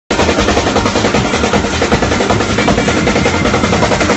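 Gospel shout music in a fast praise break: a Hammond-style drawbar organ played hard and quick over a drum kit keeping a rapid, dense beat. It starts abruptly at the very beginning.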